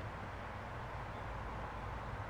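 Steady outdoor background noise, a constant hiss and low rumble with no distinct events, and a faint short chirp about a second in.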